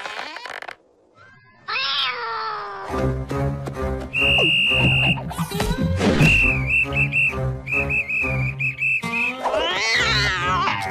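A cartoon cat character gives a falling yowl about two seconds in. Then cartoon music starts, with a steady beat and a high, whistle-like melody.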